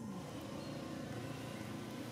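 Steady low outdoor background rumble, with no distinct events.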